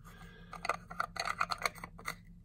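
Plastic rear lens cap being twisted onto a lens's metal Nikon F-mount bayonet: an irregular run of small clicks and scrapes.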